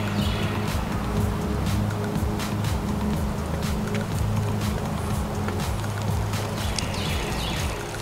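Background music with a steady beat over sustained low notes.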